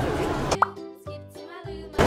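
A short pop sound effect with a quick rising pitch about half a second in, followed by a brief stretch of light music.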